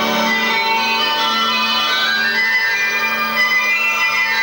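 Music accompanying a belly dance: a melody moving up and down over a steady low drone.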